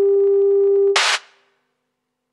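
Electronic test tone, a single steady pitch with fainter higher tones above it, sampled as the track's closing effect. About a second in it cuts off into a short burst of static hiss, which quickly fades to silence.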